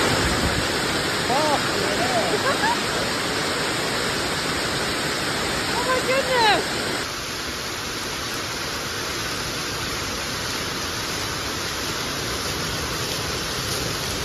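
Steady rushing noise that drops slightly in level about seven seconds in, with a few faint, short rising-and-falling calls in the first half.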